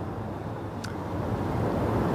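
Steady low background noise, with a single short click a little under a second in.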